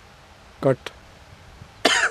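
A man's short vocal sound with falling pitch, then a single click, then a sharp cough near the end.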